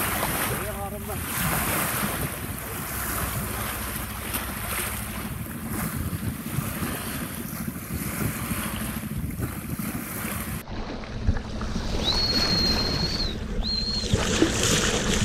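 Bow wave of a sailing yacht rushing and splashing along the hull, with wind buffeting the microphone. About ten and a half seconds in, the sound cuts to a duller wash of water at the surface, and near the end a high, steady whistle sounds twice.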